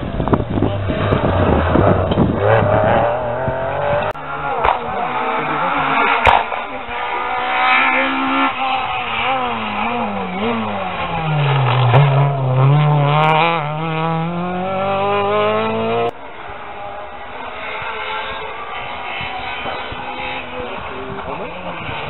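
Rally car engine on a special stage. Its note falls in steps as it brakes and shifts down, then climbs again as it accelerates past, loudest about twelve seconds in. The sound cuts off suddenly a few seconds later and a fainter engine follows.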